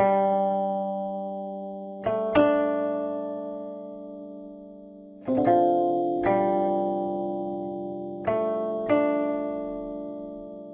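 Solo guqin, the seven-string Chinese zither, playing a slow, sparse passage: about seven plucked notes, some struck in quick pairs, each left to ring and fade slowly before the next.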